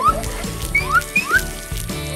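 Background music with a steady low bass line and a few short, rising whistle-like notes.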